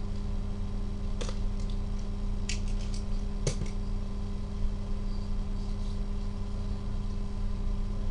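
Utility knife cutting through the seal of a foil-wrapped cardboard card box, heard as a few small clicks and scrapes: one about a second in, a quick run of them around two and a half to three seconds, and a sharper one just after. A steady electrical hum runs underneath.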